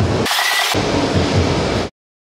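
Loud, steady noise of a busy exhibition hall. About a quarter second in it thins briefly to a hiss, then it cuts off abruptly near the end.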